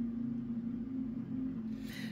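Soft background music, a low note held steadily with no melody changing.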